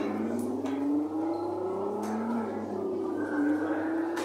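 Engine sound effect from the Jolly Roger Silver Spydero kiddie ride's speakers, a car revving up in rising pitch glides, twice, over a steady low hum.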